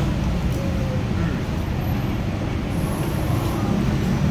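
Steady low rumble of a busy eatery's background noise, with no single sound standing out.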